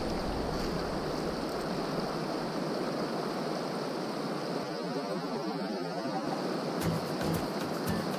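Steady rush of a shallow, rocky river running over riffles, with background music under it. A few light clicks come near the end.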